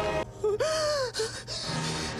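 A woman gasping and moaning from the film soundtrack: breathy gasps, with one voiced moan that rises and then falls in pitch about half a second in. A held music chord cuts out just after the start.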